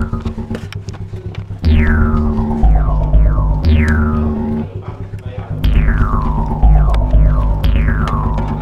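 Jaw harp (mouth harp) music: a low buzzing drone that steps to a new pitch about once a second, with repeated falling whistle-like glides over it. The sound dips briefly in the middle.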